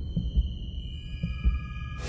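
Produced logo sting: a low pulsing rumble with a couple of heavy thuds under a cluster of high, steady ringing tones that come in one after another and stop together at the end.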